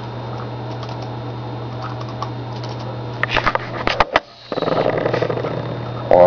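Clicks of a computer mouse and keys over a steady low hum. A cluster of sharper, louder clicks comes about three seconds in, and the hum drops out for a moment just after.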